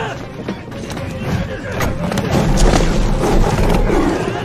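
Film battle soundtrack: dramatic score under a dense mix of shouting and short impacts, with a deep rumble swelling in the second half.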